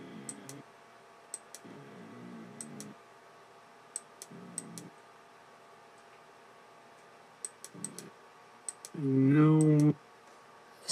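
Sharp clicks on a computer, in small clusters a second or two apart, as a paused video is stepped through frame by frame; faint muffled voice murmurs come in between. Near the end a person's voice holds one louder sound for about a second.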